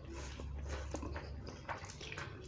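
Instant noodles being slurped and chewed close to the microphone: wet sucking and mouth-smacking sounds with a few sharp clicks.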